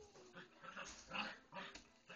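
Six-week-old puppies play-fighting, giving a few short, faint vocal calls; the clearest comes about a second in.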